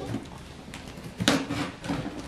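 Scissors cutting and scraping through plastic packing tape on a cardboard box, a rough crackling rasp with a couple of short, sharper rasps after about a second.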